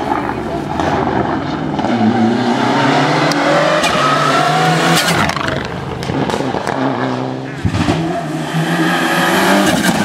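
Mitsubishi Lancer Evolution rally car engines revving hard through a tight bend, the pitch climbing and dropping with throttle and gear changes. A few sharp cracks come about halfway through.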